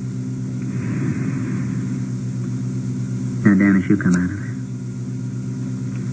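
Steady electrical hum on an old audio-tape recording, with a soft breathy hiss about a second in and a short murmur of a voice a little past halfway.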